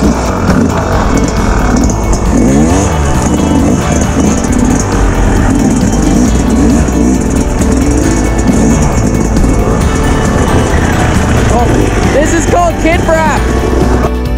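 Dirt bike engine revving up and down as it is ridden along a trail, with a sharp rev near the end. Music plays underneath.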